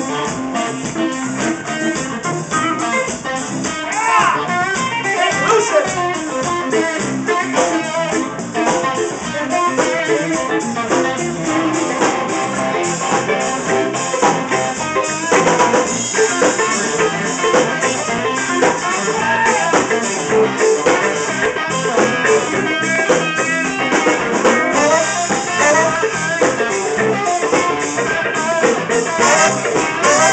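Live blues band with an electric guitar solo played over bass and drums, with bent notes sliding up and down.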